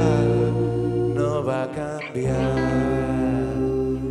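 A live rock band playing, with voices holding long sung notes over keyboard, electric guitar and bass guitar. The bass drops out briefly about two seconds in.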